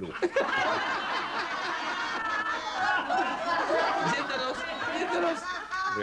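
A studio audience laughing, many voices overlapping, running steadily for several seconds before dying down near the end.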